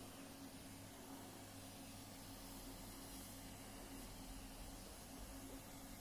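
Near silence: faint steady hiss and low hum of room tone.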